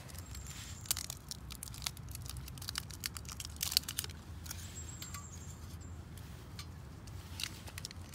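Crinkling and tearing of the foil wrapping as Esbit solid-fuel tablets are unwrapped by hand: an irregular run of sharp crackles and clicks. Under it is a steady low hum of distant city noise.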